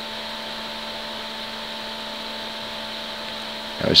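Steady background hum made of several constant tones over a faint hiss, unchanging throughout; a man starts speaking right at the end.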